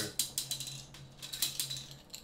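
Plastic Connect Four checkers clicking and rattling in quick runs of small clicks, twice.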